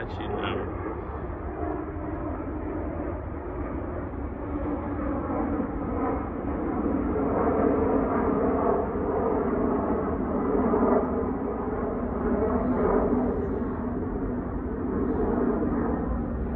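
Outdoor phone recording: wind rumbling on the microphone under a steady, low engine drone. The drone grows louder from about six seconds in and eases again near the end.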